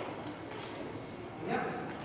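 Hoofbeats of several horses moving together on the sand footing of an indoor riding arena.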